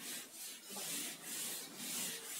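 Whiteboard being wiped with an eraser in steady back-and-forth strokes, about two a second, each a dry rubbing hiss.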